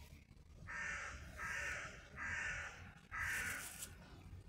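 A crow cawing four times in a row: harsh calls of about half a second each, roughly evenly spaced.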